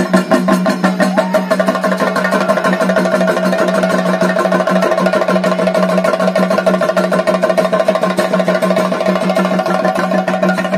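Chenda drums played in a fast, even rhythm for a Theyyam dance, over a steady droning tone.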